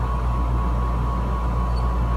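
A steady low hum with a faint thin high tone above it, unchanging throughout.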